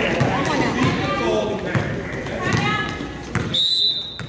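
Basketball being dribbled on a gym floor among voices, then a referee's whistle blows as one steady shrill tone for about half a second near the end.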